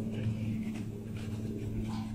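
Dog in a plastic cone collar sniffing around at the ground in short, soft, irregular sniffs, over a steady low hum.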